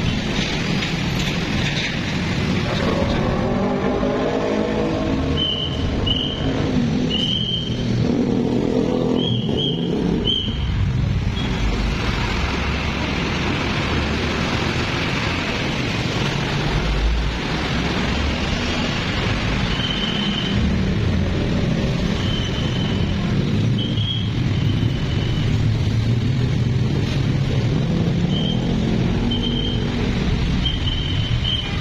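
Continuous road traffic: passing cars and motorbikes with a steady roar of tyres and engines, some engines rising in pitch as vehicles pull away. Short high tones recur several times over it.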